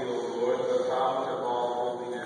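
A priest intoning a liturgical prayer: a man's voice chanting on held, nearly level notes.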